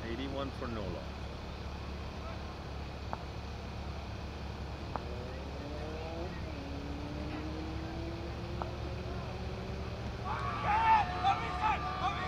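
A steady low outdoor hum with a few faint clicks and a faint, slowly rising drone in the middle. About ten seconds in, cricket fielders give a loud shouted appeal for a caught-behind.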